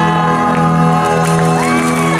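Live pop band holding a sustained chord at the end of a song, with audience whoops and cheers rising over it about a second and a half in.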